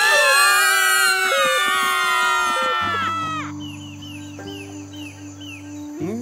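A cartoon creature's loud, trumpet-like blare from its horn-shaped nose: many tones sounding together and sliding slowly down in pitch for about three seconds before cutting off. A soft music bed with a few short chirps follows.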